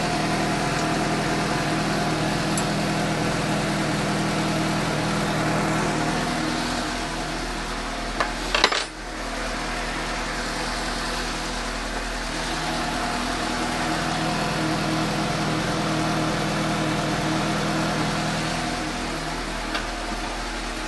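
Suzuki GSX-S750's inline-four engine idling steadily on freshly fitted iridium spark plugs, sounding smoother and a little more crisp. A short clatter comes about eight and a half seconds in.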